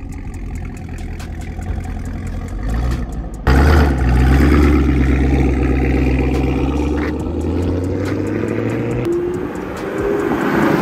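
Supercharged 6.2-litre V8 of a Camaro ZL1 1LE through a Corsa Extreme cat-back exhaust: idling steadily, then suddenly much louder about three and a half seconds in with a deep, steady exhaust drone as the car pulls away from the curb, dropping off near the end.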